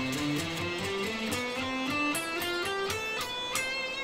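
Electric guitar playing a scale in single notes, one after another at about four notes a second, climbing step by step in pitch and then starting a new run from lower down.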